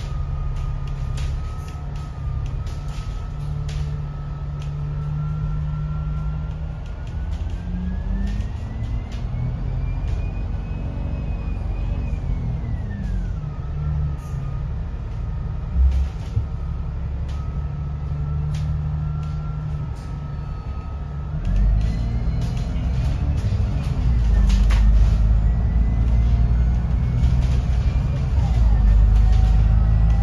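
Alexander Dennis Enviro500 double-decker bus's diesel engine and drivetrain heard from the upper deck, with a whine that rises in pitch as the bus picks up speed, falls away as it slows, and climbs again near the end as it pulls away louder. Light rattles and clicks from the bus body come through over the running.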